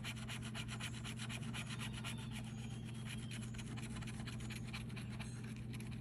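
Scratch-off lottery ticket being scratched hard with a bottle-opener-style scratcher tool: rapid, even back-and-forth rasping strokes on the card's latex coating, over a steady low hum.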